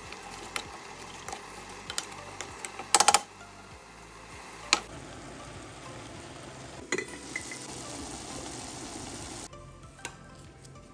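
A spatula stirring meat stew and shredded greens in a metal pan, with scattered clicks and scrapes against the pan and a quick run of knocks about three seconds in. From about five seconds in, a steady hiss of the pot simmering and sizzling, which drops away shortly before the end.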